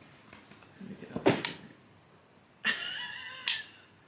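A sharp click about a second in, then a brief high-pitched vocal "ooh" of admiration near the end, closing on a second click.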